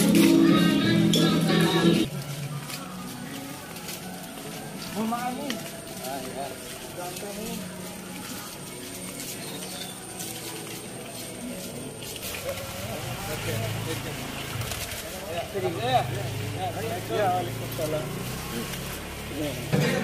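Music for the first two seconds, then cutting to a quieter background of indistinct voices at a distance.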